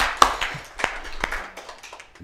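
A few people clapping: a small, sparse round of applause whose claps thin out and stop about a second and a half in.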